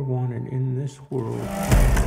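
Film trailer soundtrack: a low, voice-like sustained sound, a brief lull just after a second in, then a deep boom near the end that opens into dense rumbling sound effects and score.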